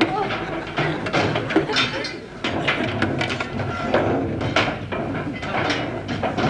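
Irregular metal clanks and knocks of steam-engine parts being wrenched off and thrown about on a boat's deck, over a steady low hum.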